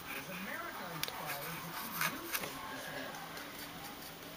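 Faint, distant talking in the background, far quieter than a nearby voice, with a couple of light clicks.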